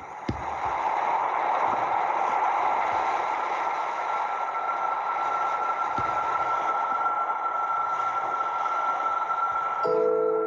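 Ambient film soundtrack fading in over the first second: a steady rushing noise with a thin held tone above it, played back from a computer.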